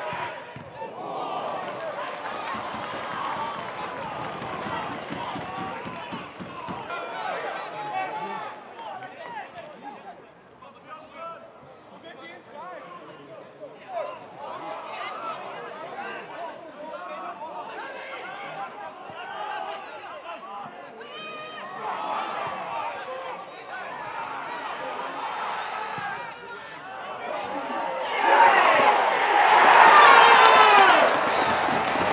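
Football ground atmosphere: a small crowd and players shouting indistinctly. The crowd noise swells sharply near the end.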